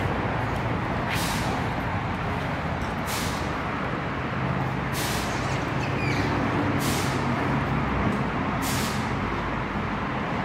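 Steady machinery hum in a tire-shop bay, with a short burst of air hissing about every two seconds.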